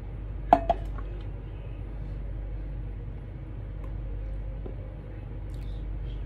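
A single short clink of a cup against a dish about half a second in, then a steady low hum with a few faint taps while warm gelatin is scooped and poured over the dessert.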